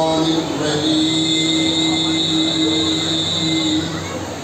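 A man's voice in melodic Quran recitation over a microphone, holding one long, steady note for about three seconds before breaking off near the end.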